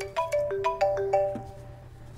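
Mobile phone ringtone for an incoming call: a short melodic tune of quick separate notes that stops about one and a half seconds in, over a low steady hum.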